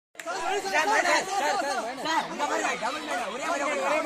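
Several voices shouting and calling out at once, loud excited chatter that overlaps throughout.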